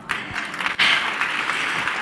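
An audience applauding, the clapping swelling about a second in.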